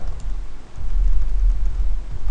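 Computer keyboard typing, a few faint separate keystrokes, over a steady low rumble.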